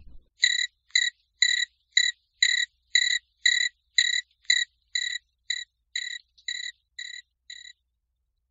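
Cricket chirping, about two short high chirps a second in an even rhythm, fading slightly near the end.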